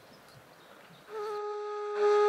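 Background music starts about a second in with a long held, flute-like note that then moves to other notes, after a faint, near-quiet start.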